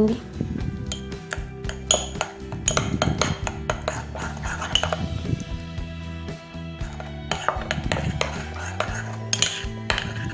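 Metal spoon clinking and scraping against a ceramic bowl in quick irregular taps, stirring flour and water into a thick paste, over background music.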